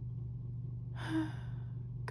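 A person sighing: one breathy exhale about a second in, lasting about half a second, over a steady low hum.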